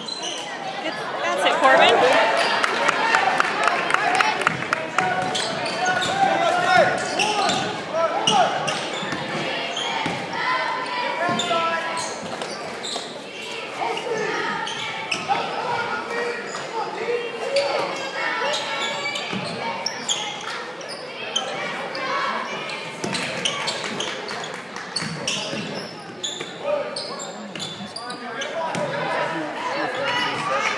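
Basketball game in a gym: a ball bouncing on the hardwood court amid shouting voices from spectators and players, all echoing in the large hall. The noise swells about two seconds in.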